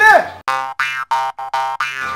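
A comic sound effect: a rapid run of about six short, identical electronic notes on one pitch, roughly four a second.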